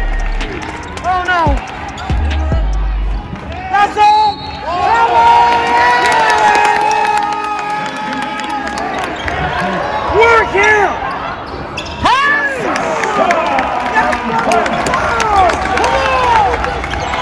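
Live college basketball play: sneakers squeaking in short chirps on the hardwood court and the ball bouncing, with a spectator's long shouts over it.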